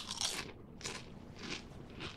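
A person biting into a crisp Lay's potato chip with a loud crunch, then chewing it in several shorter crunches.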